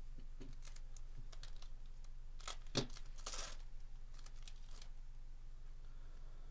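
Trading cards and a foil card-pack wrapper being handled: scattered light clicks and rustles as cards slide over one another, with a sharper tap a little before three seconds and a brief crinkle just after.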